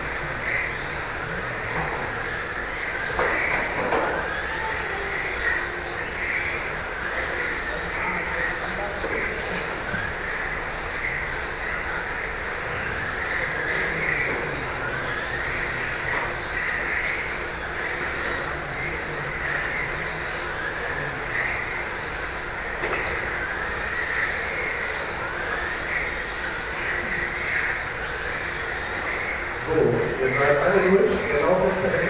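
Several 1:10 electric RC GT cars with 17.5-turn brushless motors racing: a high-pitched motor whine that rises again and again as the cars accelerate out of the corners.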